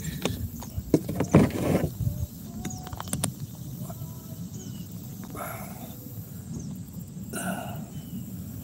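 Several clicks and knocks of a phone mount being handled against a hard plastic kayak in the first two seconds, then quiet open-air background with a few faint short calls.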